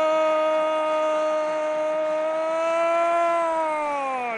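Football commentator's long sustained goal cry, one held 'gooool' at a steady pitch that sags and falls away just at the end.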